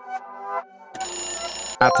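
Light electronic background music, then about halfway a bright electronic ringing, like a bell or timer alarm, sounds for under a second as the quiz countdown runs out. Near the end a loud reveal sound effect with several falling pitches comes in.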